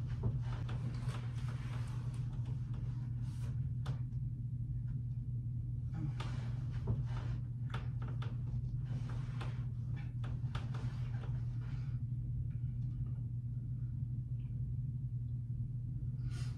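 A steady low hum, with bouts of soft rustling of bedding and clothing as a person shifts on a bed: the first in the opening four seconds, the second from about six to eleven seconds in. A few small clicks sit among the rustling.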